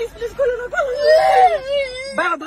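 A young child crying in one long unbroken wail that climbs in pitch about a second in and falls back near the end.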